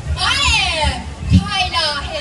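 A high-pitched voice calling out through a public-address microphone in long sweeping rises and falls, with a low thudding music beat underneath.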